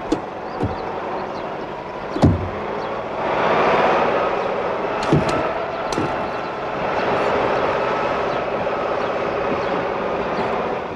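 A lorry engine running, with a sharp slam about two seconds in, then the engine picking up and staying louder as the lorry pulls away. A few lighter knocks come before and after the slam.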